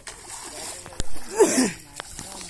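Water splashing and sloshing as a man wades through a shallow flooded rice field, with a sharp knock about halfway through and louder splashing just after it.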